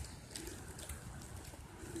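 Faint outdoor background noise with a low wind rumble on the microphone and a few faint rustles; no distinct event stands out.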